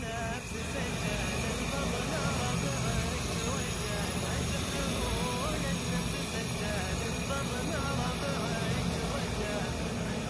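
Portable butane canister stove burning, its gas flame giving a steady hiss, with an indistinct voice over it.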